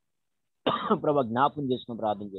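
A man's voice speaking over a video call, starting about two-thirds of a second in after a brief silence.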